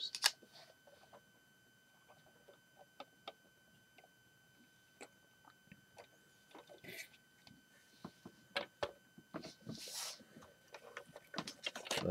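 Faint, scattered clicks and taps of hands handling a Lego model, its plastic bricks knocking against fingers and each other, with two brief rustles in the later part.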